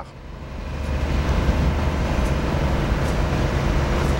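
Low rumble of passing motor traffic that swells over about the first second, then holds steady and loud.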